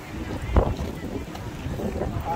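Wind buffeting the microphone in a steady low rumble, with a loud thump about half a second in and faint voices in the background.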